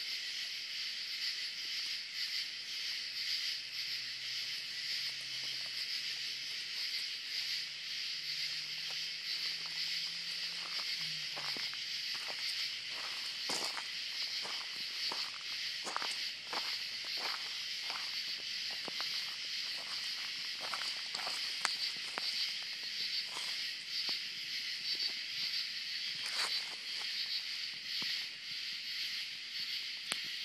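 A steady, high-pitched chorus of night insects, with a scatter of short clicks and crunches on gravel that begins about ten seconds in and thins out near the end.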